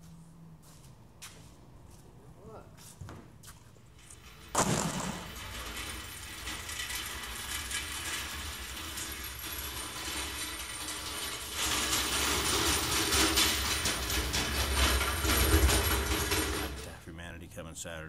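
A few light knocks at first. Then, after about four and a half seconds, a pressure washer starts spraying with a steady, loud hiss over a low motor rumble. It grows louder about halfway through and stops shortly before the end.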